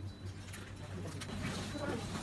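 A plastic-foil snack packet being handled, giving a few short crinkles in the second half, over a steady low hum and faint low murmuring.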